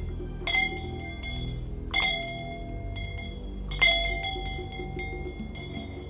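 A metal bell struck three times at intervals of one and a half to two seconds, each stroke ringing on with a clear metallic tone; the third stroke is the loudest. A low steady drone of background music runs underneath.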